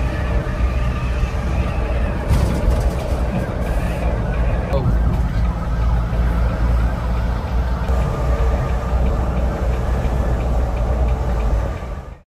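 Cabin noise of a Volvo B11R double-decker coach at highway speed: the six-cylinder diesel engine and the road make a steady low drone, with a few fainter steady tones above it.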